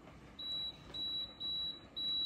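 Power XL multicooker's control panel beeping as its dial is turned to set the cooking time: four short, high beeps about half a second apart.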